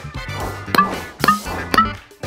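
Three quick cartoon sound-effect clicks about half a second apart, each with a brief bright tone, as apples drop one by one into the three slots of a slot-machine-style machine, over background music.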